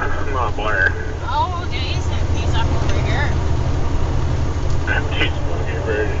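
Heavy diesel engine of a loaded Western Star log truck running steadily at road speed, heard inside the cab as a low, even drone.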